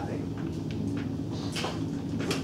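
Classroom room noise: a steady low hum with a few faint clicks and faint voices in the background.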